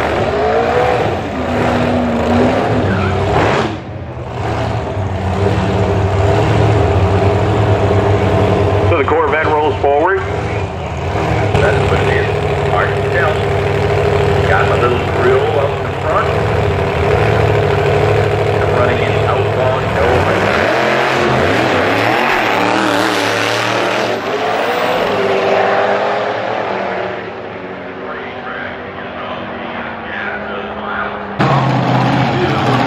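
Supercharged V8 of an altered drag car with zoomie headers, revving through a burnout at the start, then running steadily with bursts of revs while it stages. About twenty seconds in it launches at full throttle, the pitch sweeping upward, and the sound drops away near the end as the car runs down the track.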